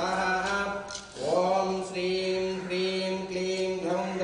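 Hindu priests chanting mantras as long held notes, with a short break for breath about a second in, over a steady low hum.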